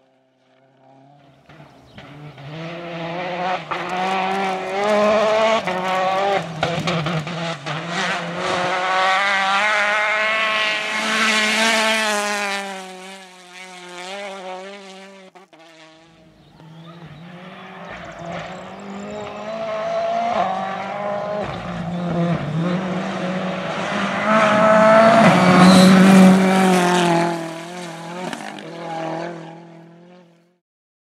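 Rally cars at full throttle on a gravel stage, passing one after the other. The first car's engine builds up loud and holds for about a dozen seconds, its pitch rising and dropping through the gear changes. After a break a second car approaches, loudest a few seconds before the end, then fades.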